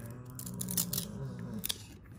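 Stiff cardboard trading cards being handled: the cards slide and rub against each other while stuck ones are pulled apart, with a sharp click shortly before the end.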